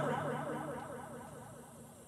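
Pause in a man's speech: his last word dies away in the hall's echo, fading steadily to faint room tone by the end.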